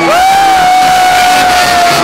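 A concert-goer close to the microphone lets out one long whoop that swoops up, holds a steady pitch for about two seconds and drops away at the end. Live rock band music and crowd noise run underneath.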